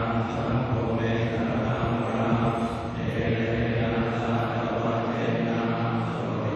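Buddhist monastic chanting in Pali, a continuous recitation held on a nearly steady monotone pitch.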